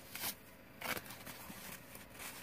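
Paper rustling as a small handmade envelope of embossed, stained paper is handled and opened: two short crinkles, the second and louder one just under a second in.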